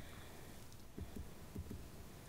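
A few faint, irregular low knocks over a steady low hum.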